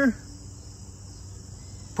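Steady background noise: an even high-pitched hiss with a faint low hum beneath, unchanging throughout.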